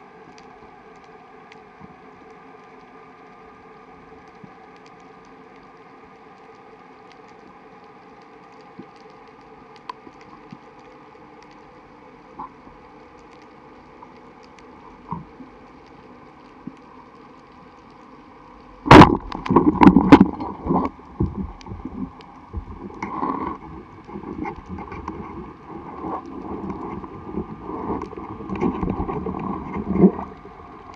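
Steady underwater sea noise with a few faint clicks, then, about two-thirds of the way in, the sharp crack of a band-powered speargun firing. It is followed by irregular knocks and rattles from the shaft, line and gun as a speared fish is taken.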